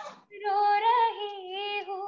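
A young woman singing unaccompanied, a slow melodic line with vibrato that comes in about half a second in and runs on into a held note.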